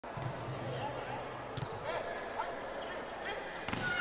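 Volleyball rally in an indoor arena: sharp smacks of the ball being hit, one about one and a half seconds in and a louder cluster near the end, over steady crowd noise in the hall.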